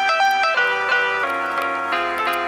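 Background music: a keyboard melody whose notes change about every half second.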